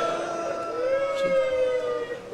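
A voice in a long, drawn-out mourning wail: held notes that slowly fall in pitch, moving to a lower note about half a second in.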